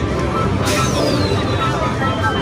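Busy arcade din: a steady wash of game machines and crowd chatter, with one electronic tone gliding slowly downward starting a little past a third of the way in.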